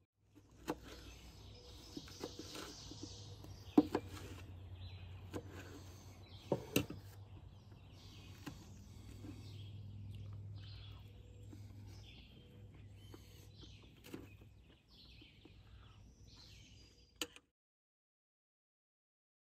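Fork and knife clinking and scraping on a metal plate, a handful of sharp clinks with the loudest about four seconds in, while small birds chirp in the background. All sound stops abruptly near the end.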